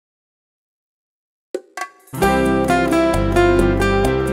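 Silence for the first second and a half, then two short plucked notes, and about two seconds in a small acoustic band starts the instrumental intro of a ballad: several acoustic guitars over a low bass and a hand drum.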